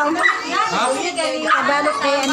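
Several people talking over one another, a dense mix of overlapping voices.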